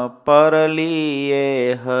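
A man chanting a Swaminarayan devotional kirtan verse alone in a slow melody. After a brief breath he holds one long, slightly wavering note, then pauses briefly near the end.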